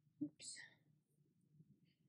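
Near silence, broken a quarter second in by a brief mouth click and a short whispered breath.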